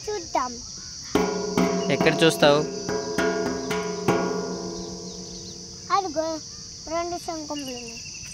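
Steady, high-pitched chirring of insects. About a second in, a pitched tone with many overtones sounds over it, with a few sharp knocks, and slowly fades over the next few seconds.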